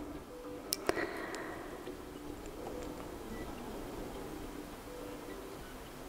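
Fingertip tapping against the side of a Samsung Galaxy F12 at its power-button fingerprint sensor during repeated fingerprint scans: two light clicks about a second in, then only faint quiet background.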